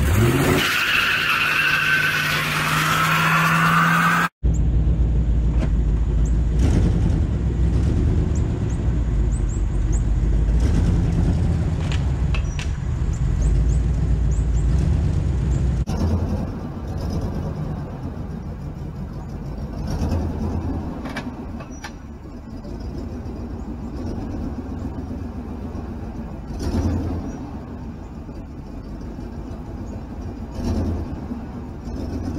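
Tires squealing over a revving engine for the first few seconds. Then, after a break, a pickup truck's engine runs loud and steady while pulling on a tow strap to straighten a crashed SUV's bent front frame. From about halfway it runs quieter, swelling louder twice.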